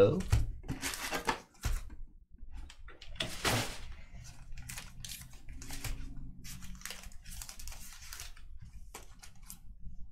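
Sealed trading-card packs rustling and crinkling as they are handled, with a string of short, irregular rustles as the packs are pulled from the box and stacked on a table.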